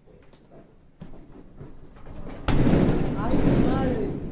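Zebu bull bellowing: a loud, rough, low call that starts abruptly about two and a half seconds in and carries on to the end, rising and falling in pitch.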